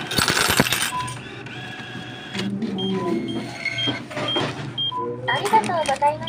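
Cash self-checkout machine dispensing change: coins clatter into the change tray in the first second. Then the machine beeps, a high beep about twice a second and a lower tone every two seconds, prompting the customer to take the change and receipt.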